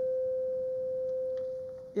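Microphone feedback ringing through the chamber's sound system: one steady tone that carries on from the speaker's voice and fades out near the end.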